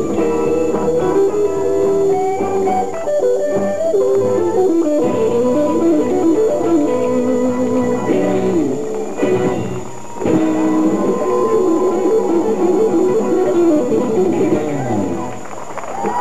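A live band playing, led by electric guitar.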